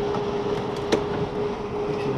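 A single sharp plastic click about a second in, as the front grille panel of a portable evaporative cooler is handled and fitted back on. A steady low hum runs underneath.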